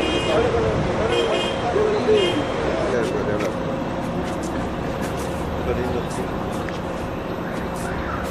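Indistinct voices over steady street traffic noise, with three short high-pitched tones about a second apart in the first few seconds.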